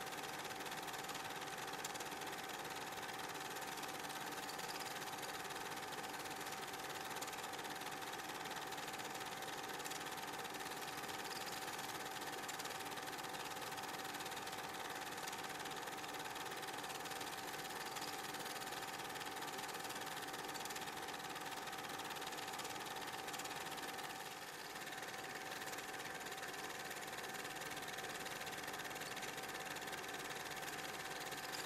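Film projector running: an even mechanical whir and hiss with a steady mid-pitched tone, dipping slightly for a moment about 24 seconds in. There is no game sound, only the machine noise of the silent film's transfer.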